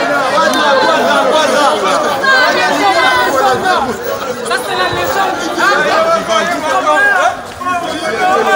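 A crowd of many people talking and calling out over one another, a steady mass of overlapping voices with no single speaker standing out.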